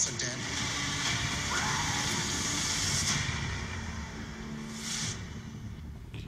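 Science-fiction movie trailer soundtrack: a steady rumbling, hissing swell of sound effects with a couple of short hits about three and five seconds in, getting quieter near the end just before the title card.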